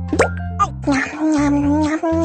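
Cartoon sound effect and background music: a quick upward-sweeping pop about a quarter second in, then a long held, voice-like note over a bouncy bass line.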